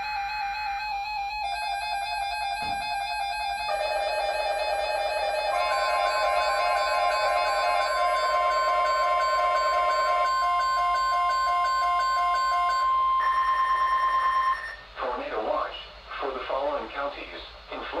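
Electronic intro music of layered steady synth tones that build up, with a long steady tone near 1 kHz held for about nine seconds, all cutting off suddenly. After that a broadcast voice begins reading a tornado watch over the radio.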